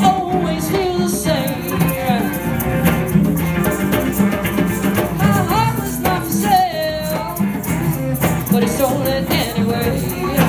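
Live blues band playing an instrumental break: electric guitars under a harmonica that bends its notes up and down.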